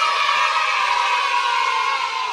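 A group of children cheering together, many voices at once, loud and steady.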